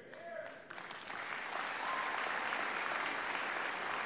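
Large audience applauding, the clapping swelling up about a second in and then holding steady.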